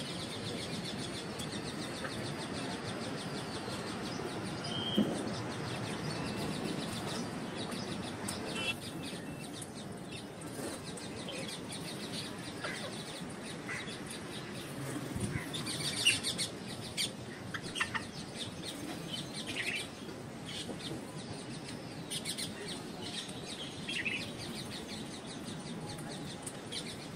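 Rose-ringed parakeet preening, giving scattered short chirps and clicks, busiest around the middle, over a steady low hiss.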